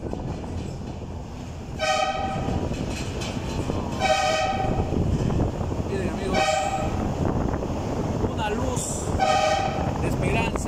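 A vehicle horn sounds four short blasts, each about half a second long and a couple of seconds apart, over the steady rumble of a vehicle driving inside a rock tunnel. The honks are the usual warning to oncoming traffic in the narrow single-lane tunnels of this canyon road.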